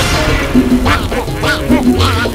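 Latin dance music from a sonidero sound system, playing a duck-themed song with duck-quack sounds in the track.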